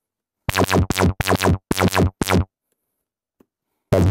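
Synthesizer voice patched through a Threetom Steve's MS-22 dual filter used as an envelope-driven low-pass gate: five short plucked notes at one low pitch in about two seconds, and another near the end. Each note starts bright and its upper tones fall away quickly as the filter closes.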